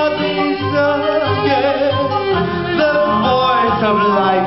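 Live acoustic band music for a slow, melancholy song: sustained melodic lines with a wavering vibrato over a string-band accompaniment, and a male voice singing.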